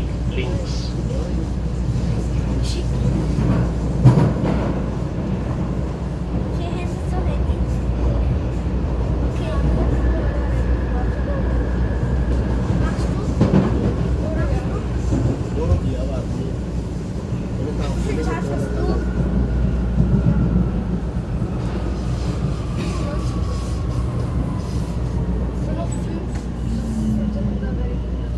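Vienna U-Bahn train running underground, heard from inside the carriage: a steady low rumble with wheel and track noise. Over the last several seconds a high electric whine falls slowly in pitch as the train slows into a station.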